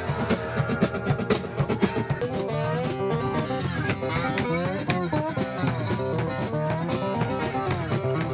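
A band playing live: guitars with bass and drums, a steady beat under a melody line that slides up and down in pitch.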